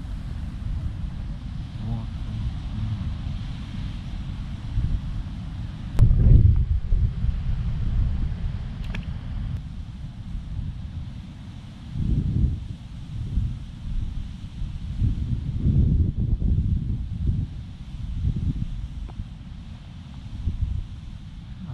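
Wind buffeting the microphone: a gusty low rumble that swells and fades, loudest in a gust about six seconds in and again in gusts near the middle and toward the end.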